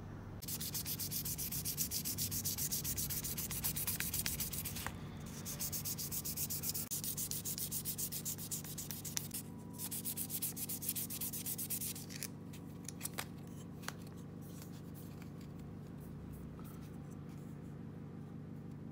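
Fine P800 sandpaper rubbed by hand over a wooden crankbait body in quick back-and-forth strokes, with two short breaks. The sanding stops about twelve seconds in, followed by a few light taps.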